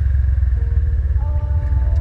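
Honda Pop 110i's small single-cylinder four-stroke engine running at low road speed, under a heavy, steady low rumble of wind on the microphone.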